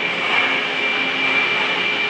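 Steady mechanical background noise, an even whir with a constant high-pitched whine.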